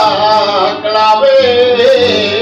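Flamenco singing: a solo voice holding long notes that waver and slide in pitch, dropping to a lower held note about halfway through, with acoustic guitar accompaniment.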